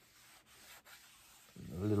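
A hand polishing the waxed top of a wooden sculpture base with a cloth: a faint rubbing over the wood, with a man's voice starting near the end.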